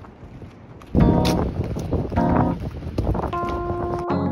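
Wind buffeting a phone microphone outdoors, loud and rough from about a second in, over lo-fi background music with plucked guitar notes.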